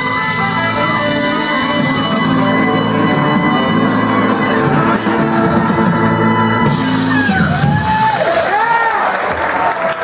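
Live blues band with electric guitar, drums, saxophone and trumpet ending a song on a long held chord. The chord stops about two-thirds of the way in, and the audience cheers and whoops.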